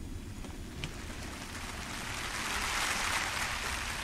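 A soft, even hiss that swells to its loudest about three seconds in and then eases off, over a faint low rumble, with a brief click just before one second.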